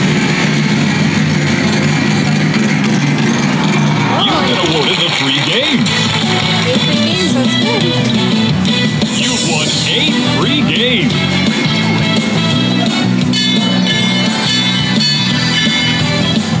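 Video slot machine's bonus-wheel feature: electronic game music and chiming jingles as the wheel spins, stops and awards free games, with chatter in the background.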